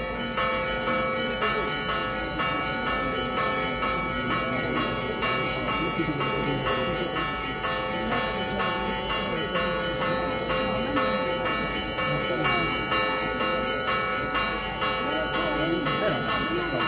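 Church bells ringing a rapid peal, struck about three times a second, with their tones ringing on together, over the murmur of a crowd.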